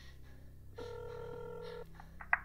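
A phone ringback tone heard through a phone's speaker as an outgoing call rings: one steady ring lasting about a second, starting a little under a second in, over a low background hum.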